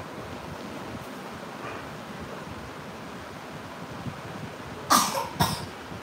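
A man coughing twice, about half a second apart, near the end, over steady room noise.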